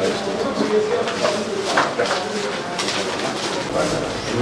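Several men's voices talking over one another in a small, crowded room.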